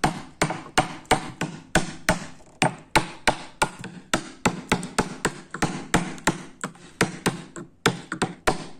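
Wooden-handled chisel being struck over and over as it chops a mortise into a block of hardwood: sharp knocks at about three a second, with a brief pause shortly before the end.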